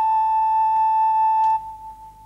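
Background film music: a flute melody settles onto one long held note that fades out about a second and a half in.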